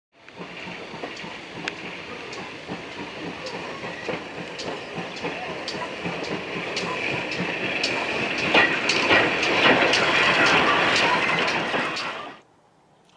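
Steam locomotive running on the track, its wheels clicking about twice a second over a steady hiss and rush, growing louder as it comes closer.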